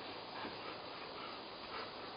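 German Shepherd whimpering softly, a few short high whines over steady background noise.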